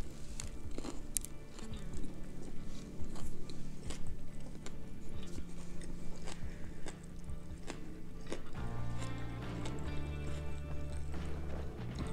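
Background music with held low bass notes that shift about two-thirds of the way through, over a person chewing a burger with small wet mouth clicks.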